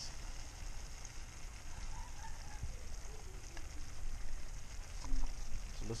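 Shrimp in garlic butter with lemon juice sizzling faintly in a stainless steel frying pan, a steady light hiss over a low background rumble.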